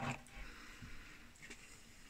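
Faint chewing of a small bite of raw winter squash, with a soft tick or two.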